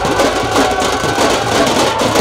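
A group of drummers beating drums fast and without a break, with a few steady musical tones above them.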